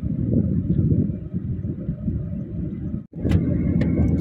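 Steady low road rumble of a car driving at highway speed, heard from inside the cabin. It breaks off for an instant about three seconds in.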